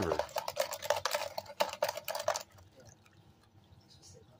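Wet gravel rattling and water sloshing in a riffled plastic gold pan being shaken to work the paydirt, stopping abruptly about two and a half seconds in, followed by a few faint drips.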